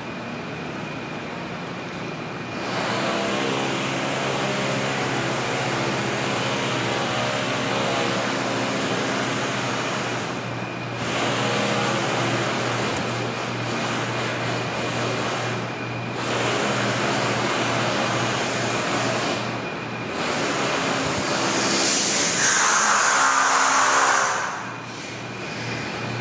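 A loud motor-driven machine running with a low hum under a broad rushing noise. It cuts out briefly three times and is loudest, with an extra hiss, just before it drops off near the end.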